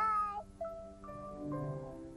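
A young girl's voice saying "bye" with a rising-falling pitch, then soft background music of held notes that change every half second or so.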